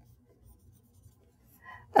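Dry-erase marker making a short mark on a whiteboard: a few faint ticks and rubs over quiet room tone.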